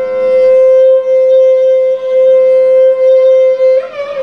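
Carnatic vocal duet with violin accompaniment holding one long, unwavering note for nearly four seconds, with no drum strokes under it. Just before the end the melody moves off the note into ornamented phrases again.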